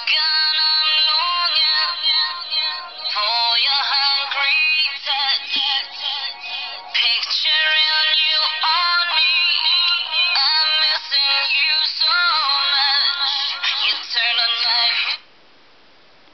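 A song with singing played through a touchscreen mobile phone's built-in loudspeaker, thin and with almost no bass. It stops abruptly about 15 seconds in when the track is stopped.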